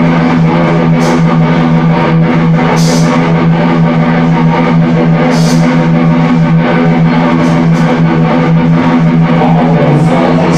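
Live rock band playing loud: electric guitar over bass and drums, with short cymbal splashes every couple of seconds.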